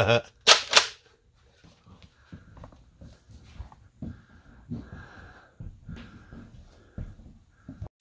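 A man's short, breathy laugh, then faint scattered rustles and soft knocks as a person moves among cardboard boxes.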